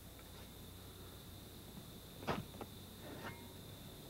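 Faint steady background hiss and hum with a thin high whine, and one short crunch a little over two seconds in, followed by two fainter ones: a steel garden spade cutting into lawn sod.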